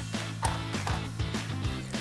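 Background music with a steady low bass line.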